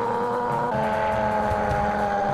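Soundtrack of an anime fight scene: a sustained pitched drone of several held tones, steady and loud, that shifts slightly in pitch about two-thirds of a second in.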